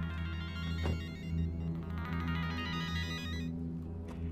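A mobile phone ringtone playing a quick repeating electronic melody, stopping about three and a half seconds in when the call is answered, over steady background music.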